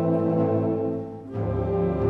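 Wind band playing held chords. The sound thins and drops a second in, then comes back in at full strength with deep low notes underneath.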